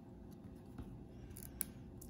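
Faint handling of a stack of trading cards in the hand: a card slid off the front of the pack, with a few soft clicks of card edges, the sharpest about a second and a half in.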